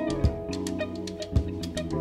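Live jazz-fusion band playing: sustained chords and melody notes over a drum kit, with strong drum hits about once a second and light cymbal ticks between them.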